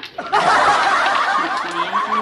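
A splash of water from the rinsed curry-paste packet hitting the hot wok of marinated chicken, sizzling. It starts suddenly just after the beginning and keeps going steadily.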